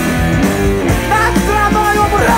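Punk rock band playing live: a sung vocal line over electric guitar, bass and drums, loud and dense.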